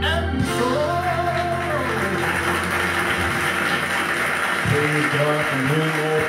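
Recorded gospel music with singing, its held chord stopping just after the start, followed by a sung line over a wash of sound. A man's voice comes in near the end.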